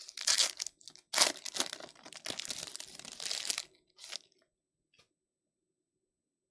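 A foil trading-card pack wrapper (2024 Panini Luminance Football hobby pack) being torn open and crinkled by hand, in loud ragged bursts of tearing and crumpling for about four seconds. A last short crinkle and a faint click follow before it goes quiet.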